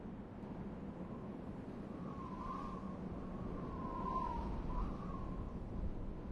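A bird gives three short wavering calls over a steady low rushing noise of outdoor ambience.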